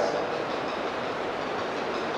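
A steady, even hiss of background noise with no distinct events.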